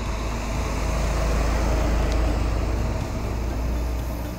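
Semi-truck hauling a flatbed trailer of brine tanks driving past, its engine and tyre noise swelling to a peak about halfway through and then easing off.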